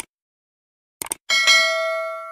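Sound effect for a subscribe-button animation: a click, then two quick clicks about a second later, followed by a bright notification-bell ding that rings on and slowly fades.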